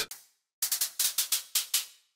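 Short, hissy cymbal-like hits from a sampler playing a recording of a vinyl record sliding out of its sleeve. About seven hits come in quick succession, starting about half a second in, as the note is dragged lower in pitch.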